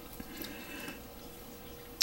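Faint small clicks and light handling noise of small plastic model-kit parts being fitted by hand, over quiet room tone with a faint steady hum.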